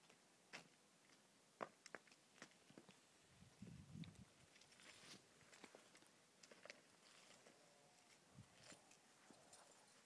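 Very faint, irregular clicks and taps, typical of a horse's hooves and a person's steps on a hard farmyard, with a short low rumble about four seconds in.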